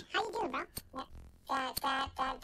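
Podcast voices playing back from a freshly rendered video with an audio render glitch: the speech comes out pitched up and garbled, a chipmunk-like sound, with a couple of sharp clicks around the middle.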